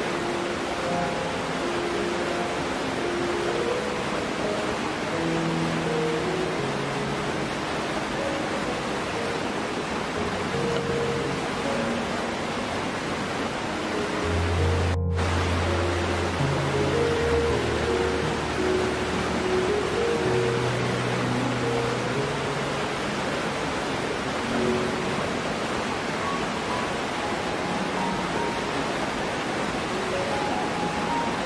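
Steady rushing of a waterfall, mixed with soft, slow background music of long held notes. A deeper bass note swells about halfway through, where the water noise also cuts out for an instant.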